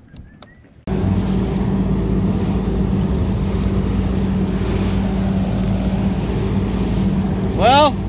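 Bass boat running at speed: a steady outboard motor drone mixed with wind and water rushing past the hull. It comes in suddenly about a second in, after a few faint clicks.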